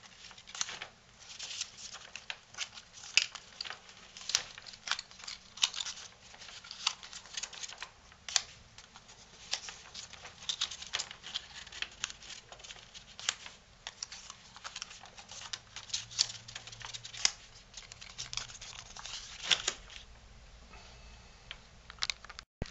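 Green cardstock, pleated into narrow segments, being creased tightly by hand: irregular crinkling with sharp crisp clicks of the paper as each fold is pressed down.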